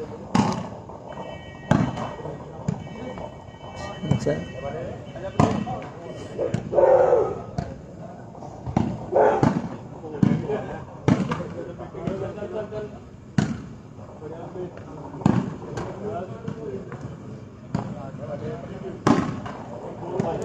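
A volleyball being struck hard by hand again and again in an underhand volleyball rally: about ten sharp slaps, irregularly a second or two apart, with players and spectators shouting between them.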